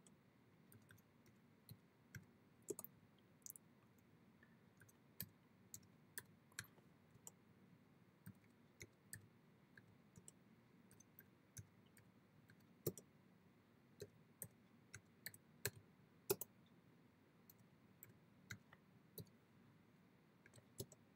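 Faint, irregular clicks of computer keyboard keys struck one at a time, one to three a second, as numbers are typed in, with a few louder strokes.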